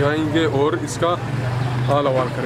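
A voice repeating the same short phrase again and again, over a steady low hum of road traffic.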